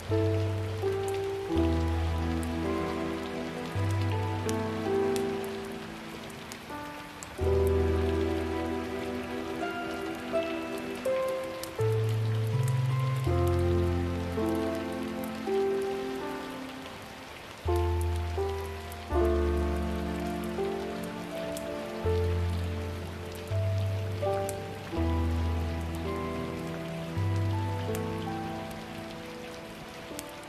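Background ambience track of steady rain, with scattered drop ticks, under slow, soft music: held chords over low bass notes that change every second or two and fade after each change.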